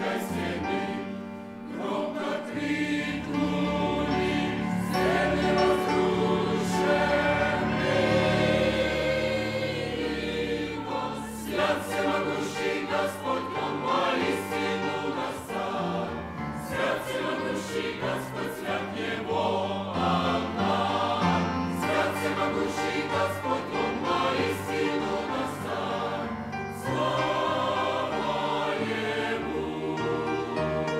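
Large mixed choir of men's and women's voices singing a hymn together, with sustained notes.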